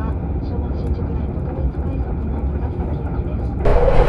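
Electric commuter train running, heard from inside the carriage as a steady low rumble. Near the end it turns abruptly louder and brighter.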